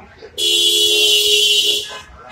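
A vehicle horn sounding one steady blast of about a second and a half, starting about half a second in. It has two low tones close together and a bright, harsh top, and it cuts off sharply.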